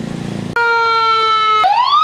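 Fire truck siren: after a low hum, it comes in suddenly about half a second in as a steady high tone, then breaks into a rising wail near the end.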